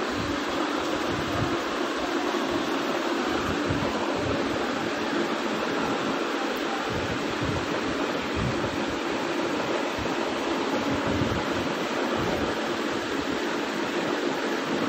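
Steady rushing background noise, like a fan or air conditioner running, even in level with no breaks.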